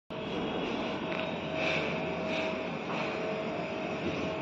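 A steady mechanical drone with a constant mid-pitched whine running under it, a machine hum such as building machinery.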